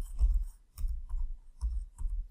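Typing on a computer keyboard: a quick run of separate keystrokes, each a sharp click with a dull low knock, several to the second.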